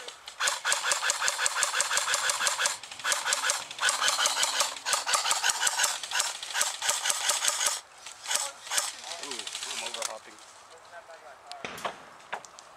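AK-pattern airsoft rifle firing on full auto: a fast, even rattle of shots in two long bursts, the first about two seconds long and the second about five, with a brief break between. Lighter, scattered shooting follows near the end.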